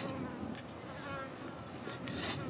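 Insects buzzing, with a steady high pulsing insect drone, while a cleaver chops through sea snail meat on a wooden board a couple of times.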